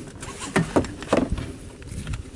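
Rustling and a few sharp knocks as a Glock 19 pistol is drawn from its holster and brought up inside a pickup cab. This is dry practice, so no shot is fired.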